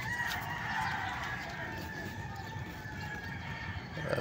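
A rooster crowing: one long drawn-out call at the start that trails off over the next couple of seconds, over a low steady rumble.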